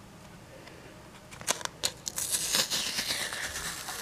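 Quiet at first, then from about a second and a half in, small clicks and a rustling, crinkling noise as a trading card in a clear plastic holder and its packaging are handled.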